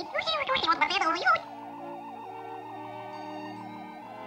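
Cartoon alien voice babbling in a fast, warbling, gargle-like gibberish for the first second and a half. Under it is eerie sci-fi background music with a high, wavering tone, which carries on alone afterwards.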